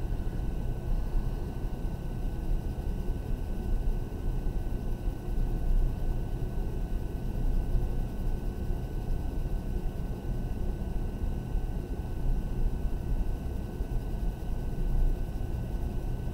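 Pencil shading on paper, soft uneven rubbing strokes, over a steady low rumble of background noise.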